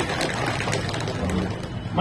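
Crowd clapping, a dense even patter of many hands in a pause between sentences of a speech.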